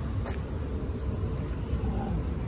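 Steady high trill of crickets over a low, even rumble of background noise.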